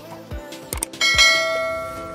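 Subscribe-button sound effect: two quick clicks, then a bell chime about a second in that rings on and slowly fades, over background music with a steady beat.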